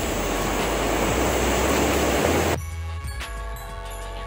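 Steady outdoor city street noise, an even hiss with a low rumble. It cuts off suddenly about two and a half seconds in and gives way to background music with held tones.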